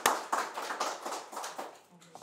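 A small group applauding with hand claps that thin out and die away near the end.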